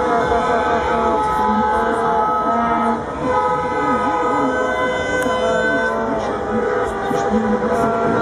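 Car horns and vuvuzelas sounding in long, steady held tones, overlapping one another, with people cheering and shouting underneath.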